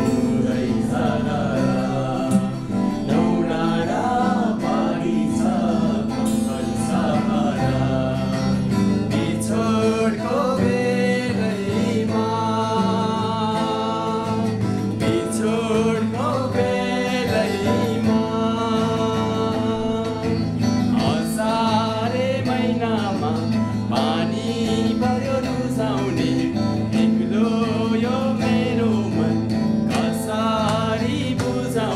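Several men singing a song together, accompanied by strummed acoustic guitars.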